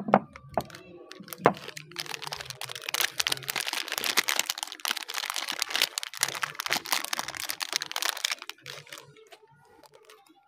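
A Palmolive Naturals soap bar's wrapper crinkling as it is pulled open by hand: a dense run of crackles from about two seconds in that dies away near the end. A single sharp click comes about a second and a half in.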